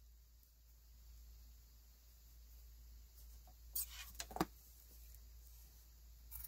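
Quiet room with brief handling sounds from fabric and scissors: a few short clicks and rustles a little past the middle, as the binding ends are lined up and the scissors are taken up for the cut.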